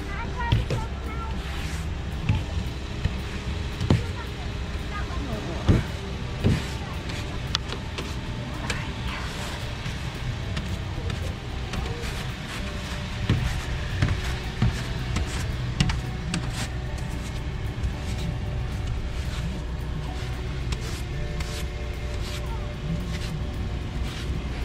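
Background music over repeated scrapes and brush strokes of a snow brush and ice scraper working snow and frost off a car windshield, with a steady low hum underneath.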